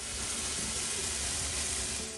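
Steady hiss of water spraying from a burst pipe inside a shower wall cavity.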